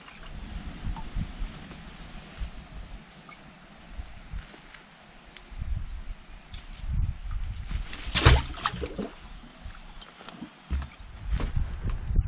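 Wind rumbling on the microphone in uneven gusts, with a sharp knock about eight seconds in and a few fainter clicks from the rope being handled at the well's rim.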